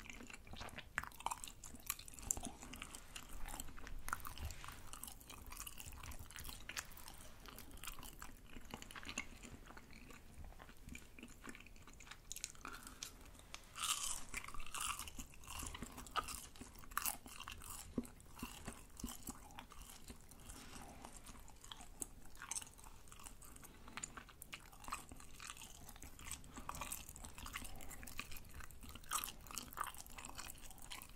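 Close-miked chewing of crispy deep-fried rice cakes (tteok), with irregular crunches all through and a louder burst of crunching about fourteen seconds in.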